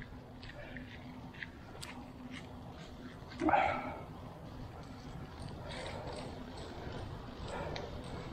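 A man sighs once, about halfway through, over low steady background noise with a faint hum and scattered faint ticks.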